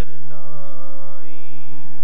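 Sikh kirtan: a man singing a shabad in a wavering, ornamented melodic line over the steady drone of harmoniums. The voice enters about a third of a second in, after a short breath.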